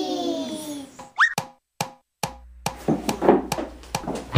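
A long pitched call sliding down in pitch, then a quick rising 'bloop' sound effect about a second in, followed by three sharp clicks and a low steady hum.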